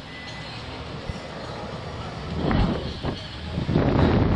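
Air rushing over the onboard microphone of a Slingshot ride capsule as it swings through the air: a steady rushing rumble, quieter at first, then swelling into two louder gusts in the second half.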